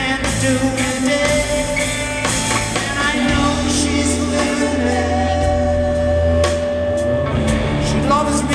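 Live rock band playing a slow song with electric guitars, bass guitar and drum kit, with a sung vocal; a long held guitar note rings through the middle while the bass shifts to a new note about three seconds in and again near the end.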